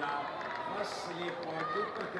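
Several voices calling out and talking over one another on an open cricket field, with a few short sharp clicks.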